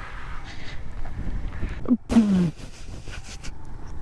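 Small single-cylinder motorcycle engine running at low speed, with wind noise on the microphone. A short voiced exclamation, falling in pitch, comes about two seconds in.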